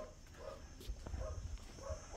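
A few short, faint animal calls from a distance, over a low rumble.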